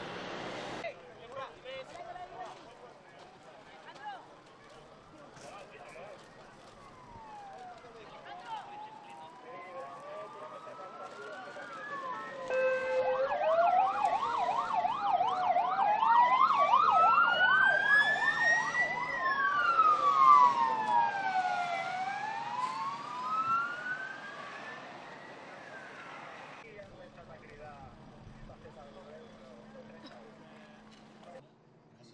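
Sirens of several emergency vehicles overlapping, slow rising-and-falling wails together with a fast yelp. They grow louder toward the middle, then fade away as the vehicles pass.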